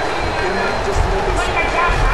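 Ringside sounds of a boxing bout: dull thuds of gloves and feet on the ring canvas, the clearest about a second in and near the end, with faint voices shouting around the ring.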